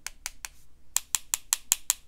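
Watercolour brush tapped repeatedly against a marker pen's barrel to splatter paint: a run of light, sharp clicks, about five a second, with a short pause just after the start.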